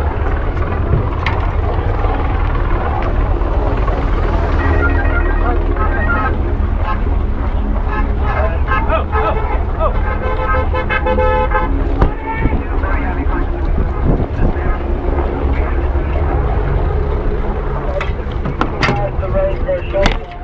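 Steady low rumble of a helicopter overhead, with car horns tooting repeatedly through the middle and people's voices around. A few sharp knocks come near the end.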